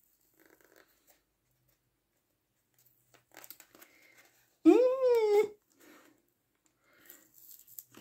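Faint scratching and rustling in short patches: a fingernail picking at the tape sealing a papercraft chip bag, trying to lift it without cutting. About halfway through, a long hummed "mm" with a rise and fall in pitch is the loudest sound.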